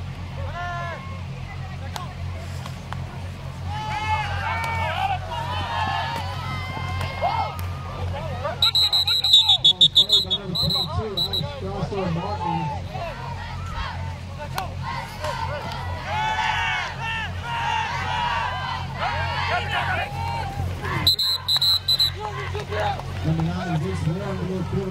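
Referee's whistle blown in shrill, pulsing blasts: a burst of about three seconds around nine seconds in, and a shorter one around twenty-one seconds, ending plays. In between come players' and spectators' shouting voices over a steady low hum.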